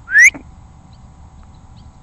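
A single short, loud, rising whistle from a person whistling, about a quarter second long, right at the start.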